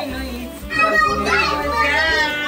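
A group of family voices singing and cheering a birthday greeting, a child's voice among them, with held sung notes from about a second in.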